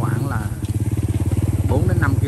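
Motorcycle engine running steadily at low revs, a constant low hum with an even pulse.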